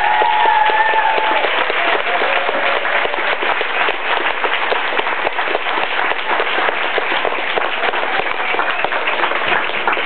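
Audience applauding, a dense patter of many hands clapping, with a drawn-out whoop of a cheer in the first second or so.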